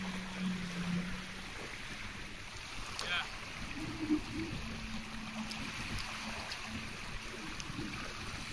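Distant Sea-Doo jet ski engine droning steadily across the water, heard over wind and water noise, with a brief high chirp about three seconds in.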